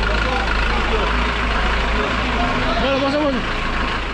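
A vehicle engine idling steadily with a constant low drone, and people's voices faintly in the background in the second half.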